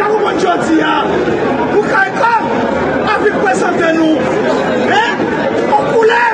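Speech: a man speaking loudly to a crowd, with other voices chattering over and around him.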